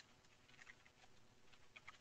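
Near silence, with faint, scattered clicks of computer keyboard keys being typed, coming more often in the second half.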